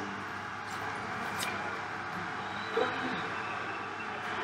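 Steady low background noise with no speech, broken by a brief click about one and a half seconds in.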